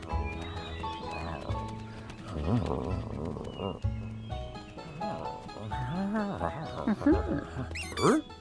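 Cartoon background music with wordless, dog-like vocal sounds from clay-animated dog characters that rise and fall in pitch. The voice is busiest around two to three seconds in and again from about six seconds to the end.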